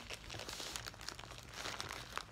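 Crinkling of a mail package's wrapping being handled and poked open with the fingers: many small, irregular crackles.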